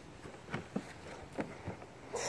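A few light knocks and clicks, about four over two seconds, over a faint background hush.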